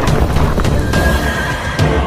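Film trailer soundtrack: music with a horse neighing, a high call held for about a second from about halfway through.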